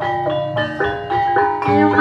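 A Javanese gamelan playing: bronze metallophones and kettle gongs struck in a quick, even pattern of ringing notes over a low sustained tone, with a deep low note coming in near the end.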